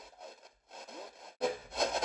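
Radio-ITC spirit box sweeping radio frequencies: short chopped bursts of radio hiss and garbled fragments, about half a second each with brief silent gaps between. About a second and a half in, a louder, longer burst of garbled voice-like radio audio starts, which the uploader hears as a spirit's words.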